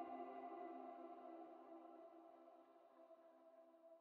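Faint end music: a held chord of several steady tones slowly fading out.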